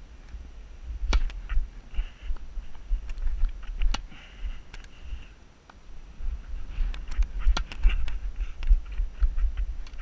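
Low rumble of movement and wind on a head-mounted action camera's microphone, with scattered sharp knocks, the clearest about a second in and about four seconds in: a tennis ball striking the racket and the court.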